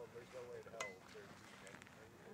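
A baseball bat striking a ball, one sharp crack with a brief ring about a second in, over faint voices talking.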